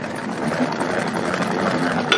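Pump-action salad spinner whirring steadily as its basket spins, driven by a hand pressing the top knob, spinning the water off washed iceberg lettuce.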